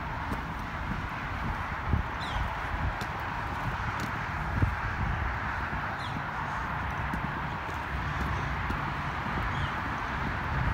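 Footsteps on concrete as someone walks, over a steady outdoor hiss. A short high falling chirp comes three times, every three to four seconds.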